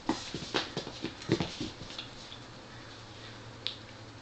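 A kitten pouncing and tumbling on a hardwood-style floor while grappling a feather toy: a flurry of quick taps, scrabbles and thumps over the first couple of seconds, then one sharp tap near the end.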